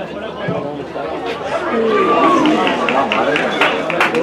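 Several voices calling and talking over one another on a football pitch, with one long rising-then-falling shout about two seconds in, after which the voices get louder.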